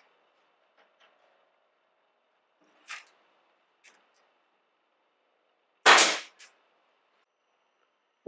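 Pneumatic brad nailer firing an inch-and-a-half brad nail into oak plywood: one loud, sharp shot about six seconds in.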